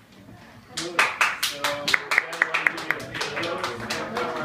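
A small audience clapping in a room, beginning about a second in after a brief hush, with voices calling out over the applause.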